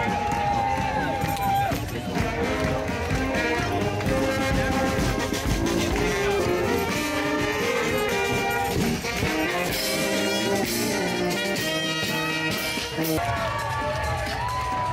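Street brass band playing a tune: trumpets and a sousaphone over a thumping bass drum, heard up close as it is passed. Crowd voices and cheering mix in.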